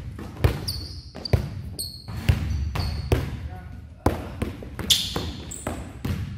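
Basketballs bouncing on a gym floor, a loud bounce about every second, with short high squeaks of sneakers on the court in between.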